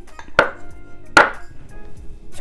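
Two sharp knocks of tableware set down on the table, about a second apart, over background music.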